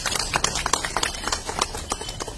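Applause: a crowd clapping hands in many quick, uneven claps, easing off slightly toward the end.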